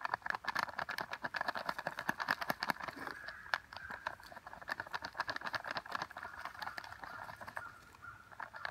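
Buck Grub granular deer feed poured from its bag, pattering onto dry leaves and soil as a dense stream of small ticks that thins out in the second half.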